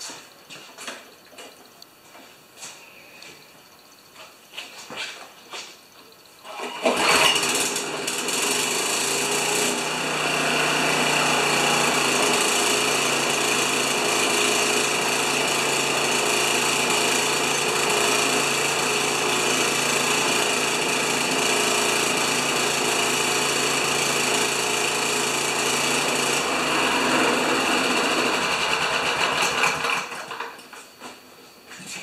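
Honda HRA214 lawn mower's single-cylinder four-stroke engine starts suddenly about seven seconds in, pulled over with its freshly repaired recoil starter. It runs steadily at speed, drops off near the end and shuts down. Before it starts there are only a few faint clicks.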